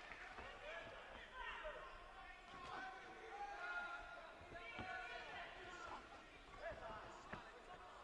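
Faint boxing-arena sound: distant voices shouting from around the ring, with a few soft thuds from the boxers' exchange.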